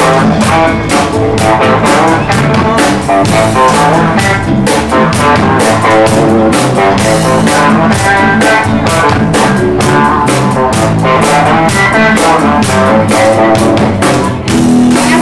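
Live rock band playing an instrumental passage: electric guitars and bass guitar over a drum kit keeping a steady beat.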